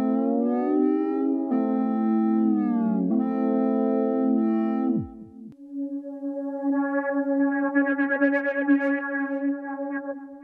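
John Bowen Solaris synthesizer playing a sustained lead tone whose pitch slides up and down between notes. About five seconds in, it sweeps steeply down and cuts off. A new steady tone with a fast flickering shimmer then swells up and fades.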